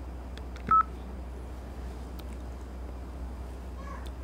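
A single short electronic beep, like a phone keypad tone, sounds about three-quarters of a second in, with a few faint clicks just before it. A steady low hum runs underneath.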